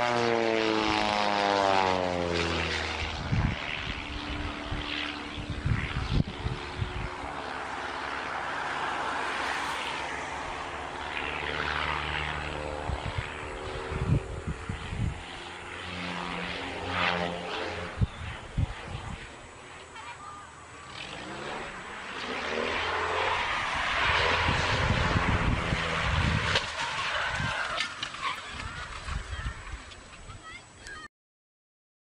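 Propeller aircraft engine drone, falling in pitch over the first few seconds as the plane passes, then going on unevenly with scattered sharp knocks.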